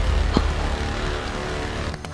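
Applause from a small group, with a deep rumble and background music underneath.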